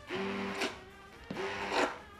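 Immersion blender motor running in two short pulses of about half a second each, its blade head pureeing cooked riced cauliflower in a pot.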